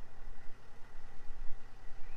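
Low, uneven outdoor rumble with a faint, steady high tone above it.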